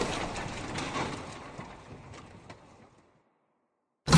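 Intro-animation sound effect: the tail of a heavy crash dying away, with a few light clicks of small blocks tumbling, fading out about three seconds in.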